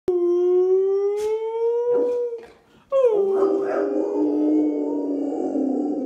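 Rottweiler howling: two long howls. The first rises slowly in pitch for about two seconds; the second starts about three seconds in with a quick drop in pitch, then holds for about three seconds with a rougher tone.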